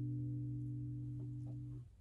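Acoustic guitar's last chord ringing and slowly fading, then muted suddenly near the end.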